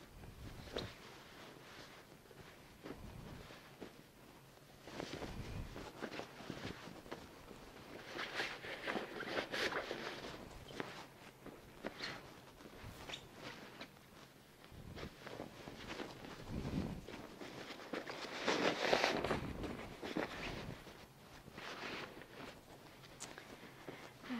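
Bed sheets rustling and crumpling as they are rolled and tucked on a hospital bed, in irregular bursts, loudest about eight to ten seconds in and again around nineteen seconds.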